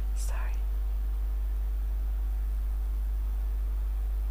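A person's short breathy, whisper-like exhalation near the start, then a steady low hum.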